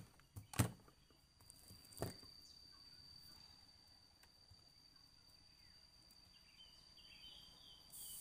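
A sharp click as a CRT television is plugged in, then about two seconds in a second thump as the set powers up. After that a faint, steady high-pitched whine from the tube set runs on.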